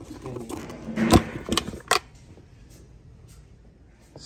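A handful of sharp clicks and knocks from a coaxial car-audio speaker being handled against a plastic fairing speaker pod, bunched between about one and two seconds in, the loudest just after one second.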